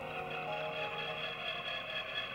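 Background music of sustained, held tones with no clear beat.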